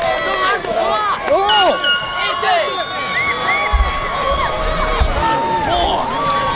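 Football crowd in the stands, many voices shouting and cheering over one another after a touchdown. A long steady tone holds under the voices from about two seconds in.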